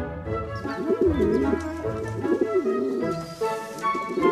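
Pigeons cooing in repeated low, warbling calls over background music with sustained tones.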